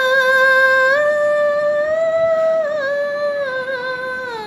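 A woman singing unaccompanied and without words, a vocalise of long held high notes with small ornamental turns. The line steps up twice, then glides down near the end.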